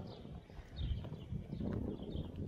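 Footsteps of someone walking on paving, with small birds chirping in repeated short, high notes.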